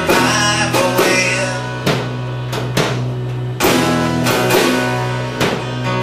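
Live band playing an instrumental passage of a song: strummed acoustic guitar and electric guitar over a steady low note, with sharp drum or percussion hits throughout.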